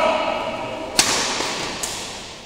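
Badminton rally: a racket strikes the shuttlecock with a sharp, echoing crack about a second in, followed by two fainter taps.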